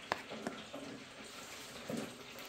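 Cooked oats being dished from an aluminium pot into a ceramic bowl: a sharp clink just after the start and a lighter one about half a second in, from the metal spoon and pot knocking, with a soft thud near the end.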